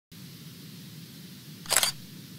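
Logo sting sound effect: a single short camera-shutter snap near the end, over a faint low steady hum.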